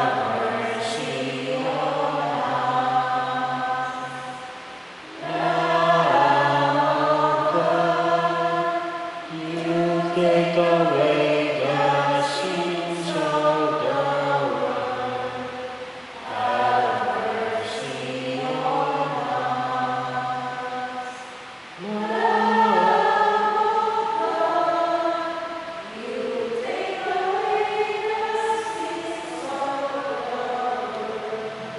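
A church choir singing a slow, chant-like Mass hymn in long phrases, with short breaks between them.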